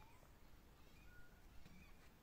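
Near silence: quiet outdoor ambience with a few faint, short, high chirps scattered through it.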